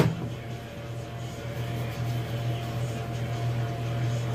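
A sharp click, then a vacuum pump running with a steady hum that grows slightly louder as it pulls down a vacuum chamber to degas hot plastisol.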